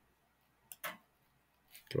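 Two quick computer mouse clicks a little under a second in, with near silence around them.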